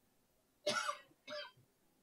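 A person coughing twice in a quiet room, the first cough louder and longer than the second.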